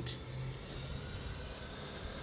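Low, steady hum of a motor vehicle engine running.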